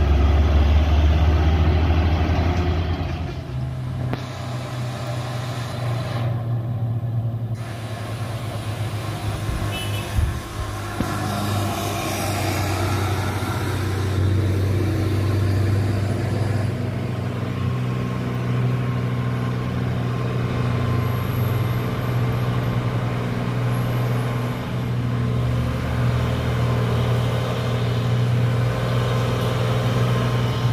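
Diesel engines of heavy cargo trucks running as they drive past close by, one after another, a steady low engine drone that shifts in pitch as each truck goes by.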